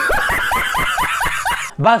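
A man laughing hard, a fast run of high-pitched ha-ha-ha sounds, about six a second, that stops suddenly near the end.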